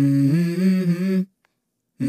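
A woman humming a short melodic phrase with her mouth closed, stepping between a few notes, then stopping abruptly for under a second.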